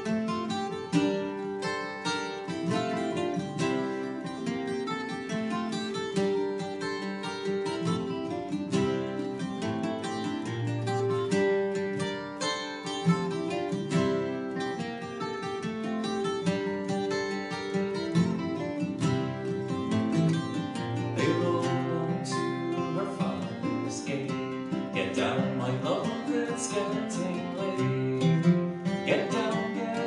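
Acoustic guitar and Irish bouzouki picking a traditional Irish ballad tune together in an instrumental break, with a voice coming back in near the end.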